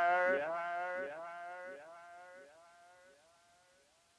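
A man's last spoken word repeated by an echo effect, about three times a second, each repeat fainter, fading out by about three seconds in.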